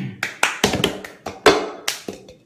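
Hands clapping and a glass cup tapped on a table in a quick cup-song rhythm, about seven sharp strikes.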